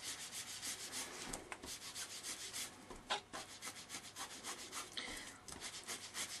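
A small piece of cut-and-dry foam rubbed briskly back and forth over a wood-grain embossed card, skimming black ink onto the raised ridges: a faint scratchy scrubbing in quick, uneven strokes.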